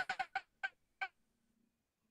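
A student's voice over a video call breaking up into about five short, clipped fragments in the first second, then cutting out. It is the sign of a failing internet connection.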